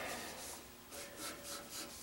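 Felt-tip marker scratching across paper in a run of quick, faint strokes as hair strands are inked in.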